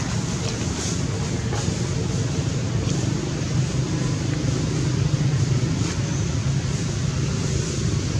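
Steady low rumble with a hiss above it, like wind on the microphone or a distant engine, with a few faint clicks in the first three seconds.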